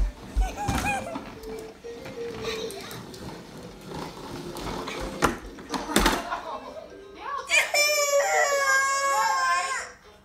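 A one-year-old baby bursts into loud crying about seven and a half seconds in, after several knocks and bumps of a plastic ride-on toy on the floor.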